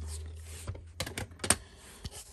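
Hard plastic graded-card slabs clicking and tapping against each other and against fingers as they are handled, a quick cluster of light clicks around the middle.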